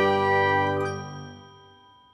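Closing chord of a logo jingle with bell-like chimes, ringing on and fading away over about a second and a half.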